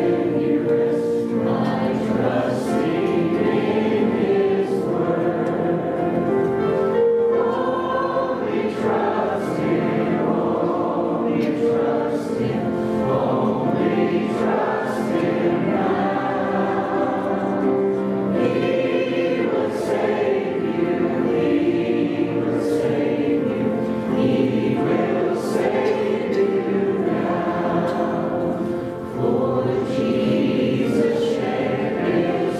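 A hymn of invitation sung by a woman and a man into microphones, with the congregation singing along, in continuous sustained phrases.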